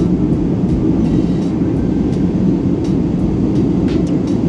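Steady low roar of a Boeing 777-300ER airliner's cabin in cruise flight, heard up close, with a few faint ticks over it.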